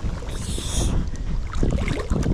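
River water rushing and lapping around a wading angler's legs, with wind rumbling on the microphone. A brief hiss comes about half a second in.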